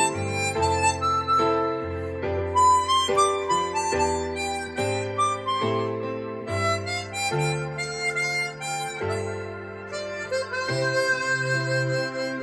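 Hohner 280-C chromatic harmonica playing a slow melody of held notes over a recorded backing track with low bass notes and chords.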